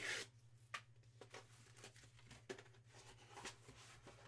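Faint handling of a paper photo and its cardboard sleeve: a soft rustle at the start and a few light ticks, over a low steady hum.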